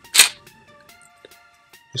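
A single sharp metallic click from handling a Mossberg 500 pump shotgun, just after the start, followed by quiet background music.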